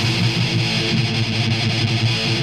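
Distorted electric guitar riff in a black/thrash metal song, played in a sparser passage where the cymbals and vocals drop out and low chugging guitar notes carry the music.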